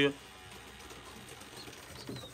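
Low background of domestic pigeons in a loft, with faint pigeon cooing.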